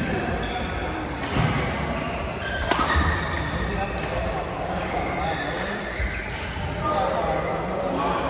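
Badminton hall sounds: rackets striking shuttlecocks, with a sharp hit about three seconds in, court shoes squeaking on the floor, and players' voices in the background.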